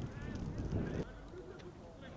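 Football players' short shouts and calls on the pitch, over a low rumble of noise that drops away suddenly about a second in.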